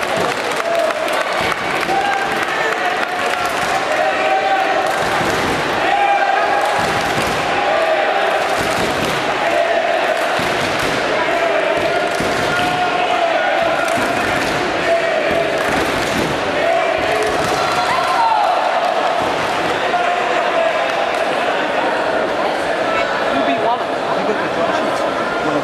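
Sports-hall crowd noise: many indistinct voices and shouts echoing in a large hall, with repeated short thuds and slaps throughout.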